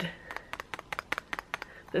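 Clear plastic lid of a Kailijumei flower lipstick clicking against its gold metal tube as it is wiggled: a quick, irregular run of small, light clicks, about seven a second. Its lid is loose on the tube, and the noise sounds stupid.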